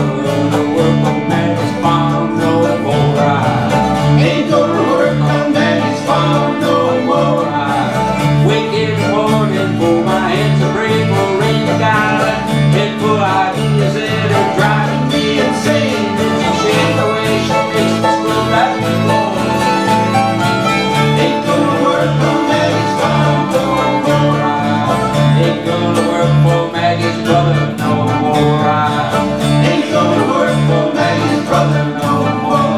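Live old-time string band playing an instrumental passage: fiddle bowing over strummed and picked acoustic guitars, with an upright bass keeping an even beat of about two notes a second.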